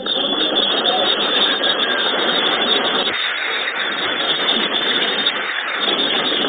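Large audience in a hall applauding, starting suddenly and continuing steadily.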